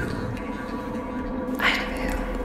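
Vocal ambient music made from layered recordings of human voices: a steady drone with a breathy, whisper-like swell near the end.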